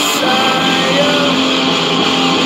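Stratocaster-style electric guitar being played, with a man singing along over it.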